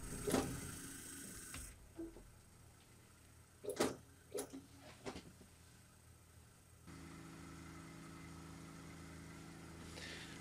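A K40 CO2 laser cutter being switched on: a few clicks and knocks, then about seven seconds in a steady low hum starts as the machine powers up.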